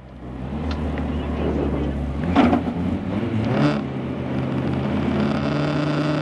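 Lada 21074 rally car's four-cylinder engine running steadily at a standstill, heard from inside the cabin, with a couple of brief voices over it.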